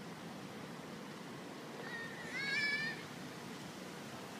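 A single high-pitched, slightly wavering animal call about a second long, a little past halfway through, over steady outdoor background hiss.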